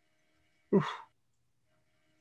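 A man's short "oof" exclamation about halfway in, brief and falling in pitch.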